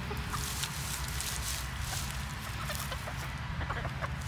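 Hens clucking softly and repeatedly as they forage in the soil, in short scattered calls, over a steady low rumble.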